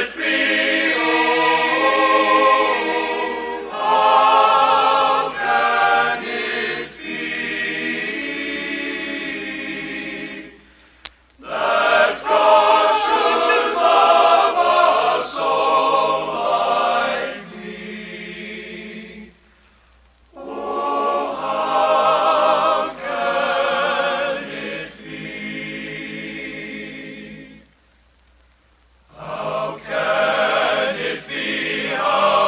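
A men's choir singing a sacred song in long sustained phrases, with short pauses between phrases about a third of the way in, two-thirds of the way in and near the end.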